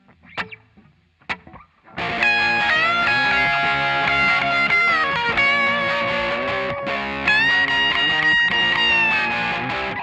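Two sharp clicks about a second apart, then from about two seconds in a distorted electric guitar plays a lead lick over a backing track: string bends up and down, and repeated picked notes held on the bent pitch.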